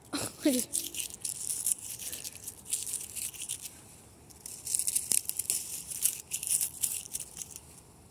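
Dry fallen leaves crunching and crinkling in irregular bursts of crackle, with a short lull about four seconds in.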